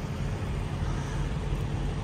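Steady low rumble of idling semi-truck engines, with no distinct events.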